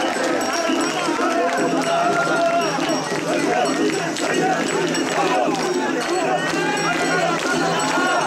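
Mikoshi bearers shouting a rhythmic chant as they heave the portable shrine, over the noise of a dense festival crowd, with a steady low hum underneath.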